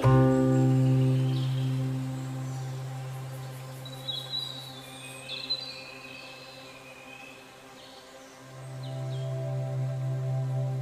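Soft new-age background music: a held low note that fades away over the first few seconds and swells back in near the end, with a few short bird chirps in the middle.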